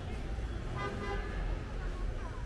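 A vehicle horn gives a short toot about a second in, over the low rumble of street traffic.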